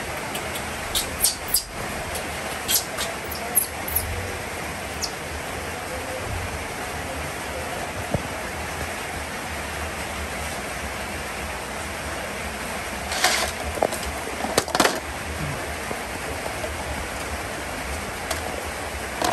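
Steady hiss of rain falling, with a few sharp clicks and knocks about a second in and again near the end.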